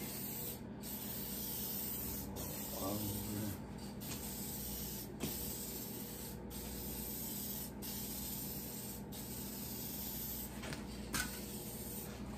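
Aerosol spray-paint can hissing in a string of passes, each about a second long with brief breaks between them, as a light coat of paint goes onto a truck body panel.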